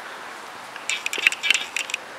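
A quick run of light crackling clicks, starting about a second in and lasting about a second.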